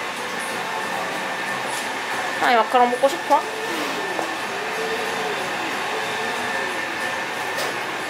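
A woman's high-pitched squeals of delight, sliding up and down in pitch, for about a second starting some two and a half seconds in. Under them runs a steady mechanical hum with a faint high whine.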